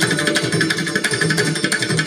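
Santoor struck with hammers in rapid, even repeated strokes, with tabla playing alongside.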